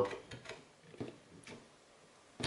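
A hand tapping the plastic fan shroud of a graphics card: a few faint, separate light ticks about half a second apart, the hollow plastic of a shroud expected to be metal.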